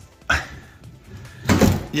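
Plastic underbody cover of a car being pried off and handled: a sharp knock about a third of a second in, then a louder clattering knock about a second and a half in.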